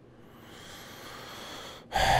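A person drawing a long, faint breath that builds for about a second and a half and then stops suddenly just before the end.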